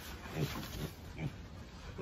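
A pig grunting quietly, a few short grunts in the first second.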